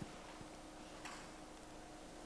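Very quiet room tone with a faint steady hum and a couple of soft ticks near the start.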